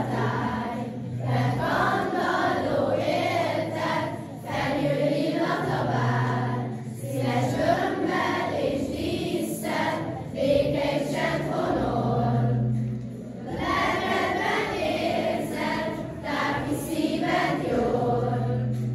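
A choir of schoolchildren singing a song together, in phrases of a few seconds with short pauses between them.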